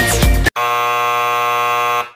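A music track stops about half a second in. A loud, steady electronic buzzer then sounds for about a second and a half and cuts off abruptly, like a game-clock buzzer.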